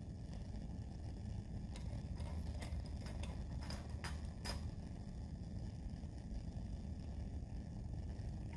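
Low steady room hum with a few faint plastic clicks between about two and four and a half seconds in, from test-tube caps and a reagent dropper bottle being handled while drops are added to culture tubes.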